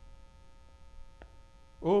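Steady electrical hum with several faint, even, high tones over a low rumble, and one faint click a little past halfway. A man's voice begins speaking right at the end.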